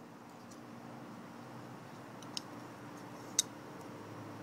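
A few small clicks from a Todd Begg Bodega titanium flipper knife being handled as its blade is unlocked and folded shut, with a sharper click past the halfway point and another near the end, over a faint steady hum.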